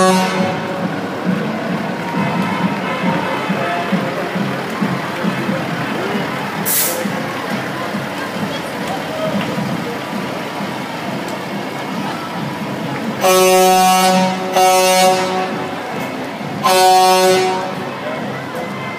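Vehicle horn honking three times near the end, each blast about a second long or less, the last after a short pause, over a steady background of street-crowd voices.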